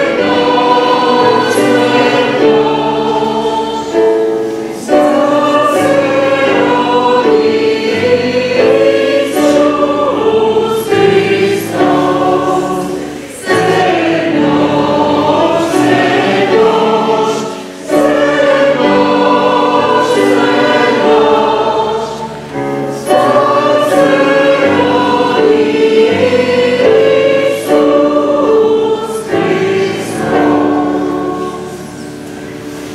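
Choir singing a slow hymn with keyboard accompaniment, in long held phrases with short breaks between them.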